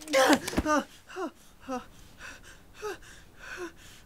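A young man cries out as he falls from standing to a carpeted floor, with a dull thump of his body landing just over half a second in. He then sobs in a string of short groans that fall in pitch, about one every half second to a second.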